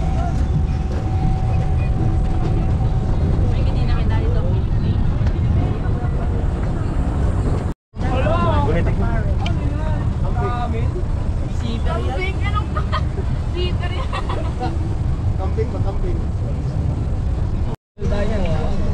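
Open-sided zoo tram running steadily as it rides, its low rumble under people's voices talking. The sound drops out for a moment about eight seconds in and again near the end.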